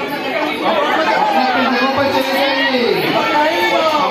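Crowd chatter: many women's voices talking over one another at once.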